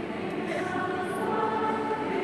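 Church choir singing a recessional hymn in long held notes, with a new phrase coming in about half a second in.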